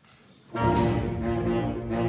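Student concert band of saxophones, brass and woodwinds coming in together about half a second in with full, sustained chords after a brief pause.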